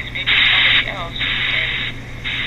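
A phone ghost-box app chopping pink noise, loud bursts of hiss switching on and off about every half second, with brief voice-like fragments in the gaps, played for picking out EVP responses. A steady low hum runs under it.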